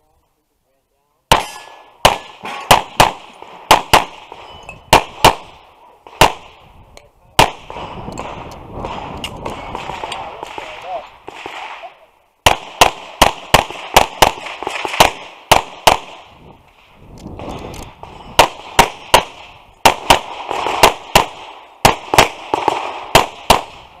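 Semi-automatic pistol fired rapidly, dozens of shots in quick pairs, in three strings separated by stretches of scuffing noise as the shooter moves between positions during a timed course of fire.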